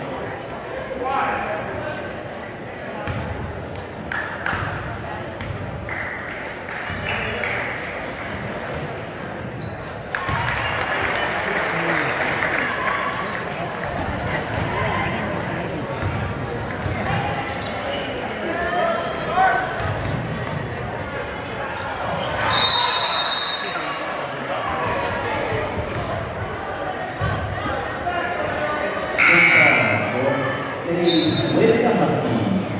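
Basketball bouncing on a gym's hardwood floor under constant crowd chatter and shouting, echoing in a large gym. The crowd noise swells about a third of the way in, and a short high whistle sounds about three-quarters of the way through.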